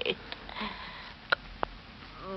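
Faint, labored breathing of a dying, stabbed woman, acted in a radio drama, between her gasped words. Two sharp clicks come about one and a half seconds in.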